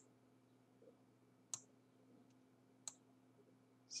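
Near silence with a faint steady hum, broken by two short, sharp computer mouse clicks, the first about a second and a half in and the second near three seconds in.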